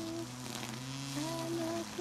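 A man singing a made-up tune in long held notes. The first note ends just after the start and a new phrase begins a little over a second in, over a steady low hum from a cordless grass trimmer.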